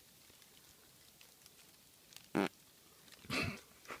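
A frog calling: one short, loud croak a little past halfway, then a second, longer and softer call near the end.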